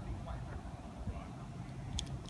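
Quiet outdoor background: a steady low rumble, with a faint short click at the very end.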